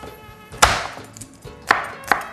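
Kitchen knife chopping garlic cloves on a bamboo cutting board: two sharp knocks of the blade on the wood, about a second apart.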